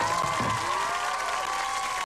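Crowd cheering and applauding, with several long held shouts over the clapping.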